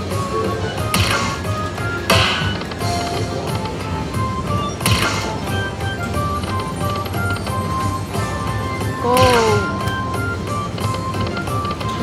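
Lightning Link Happy Lantern slot machine's bonus-spin sounds: a string of short electronic beeping tones while the reels spin, broken by sharp hits about one, two, five and nine seconds in.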